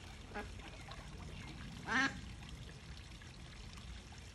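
Small rock waterfall trickling steadily into a garden pond, with short duck calls, a faint one just after the start and a louder one about halfway through.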